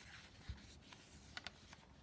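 A page of a Hobonichi Techo Day Free planner being turned by hand. It is a faint paper sound, with a soft thump about half a second in and two small ticks about a second and a half in.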